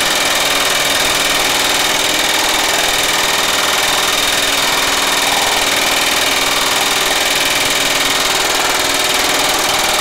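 Baileigh MH-19 power hammer running with a planishing die in its sprung leaf-spring mode, rapidly and steadily hammering a sheet-steel panel as it is shaped.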